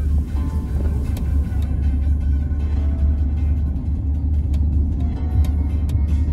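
Steady low road rumble inside a moving car's cabin, with background music playing faintly over it.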